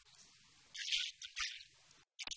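Small birds chirping in short high-pitched bursts, loudest about a second in and again near the end.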